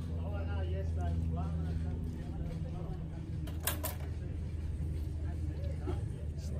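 A steady low motor hum, with faint voice-like sounds in the first couple of seconds and two sharp clicks a little past halfway.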